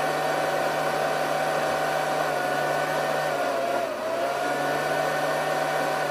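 Water in a mug hissing and singing as a 200-watt electric immersion heater brings it toward the boil. The sound is a steady whirring hiss with a faint tone that wavers about two thirds of the way through.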